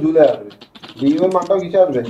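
A man speaking, with a short run of light clicks in a brief pause about half a second in.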